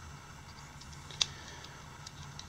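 Quiet handling of a small drone and digital calipers: faint light ticks, and one sharp click a little past a second in.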